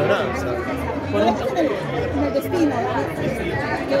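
People talking: speech with the chatter of a crowd in a large room.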